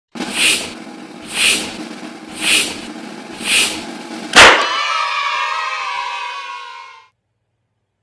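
Animated intro sound effects: four swelling whooshes of a balloon being pumped up, about one a second, then a sharp, loud balloon pop, followed by a ringing musical chord that fades out over about two and a half seconds.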